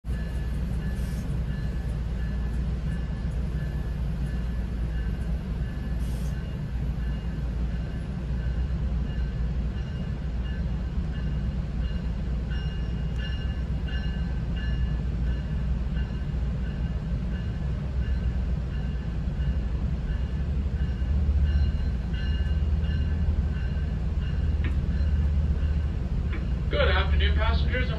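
Interior of a GO Transit bilevel passenger coach: a steady low rumble with a faint steady whine above it, and a couple of brief high hisses in the first seconds.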